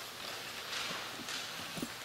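Quiet pause in a concert hall: faint audience rustling and shuffling with a few soft knocks, no music playing.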